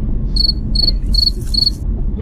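Four short, evenly spaced cricket chirps, the stock 'crickets' effect for an awkward silence, over the steady low engine and road rumble of the car cabin.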